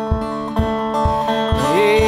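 Dobro resonator guitar played with a slide in a slow blues, holding ringing notes between sung lines. A steady low thump keeps time about twice a second.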